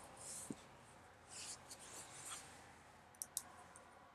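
Near silence: room tone with a few faint soft rustles, a short low thump about half a second in, and two small clicks about three seconds in.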